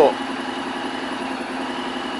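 Honda X-ADV's 745 cc parallel-twin engine idling steadily.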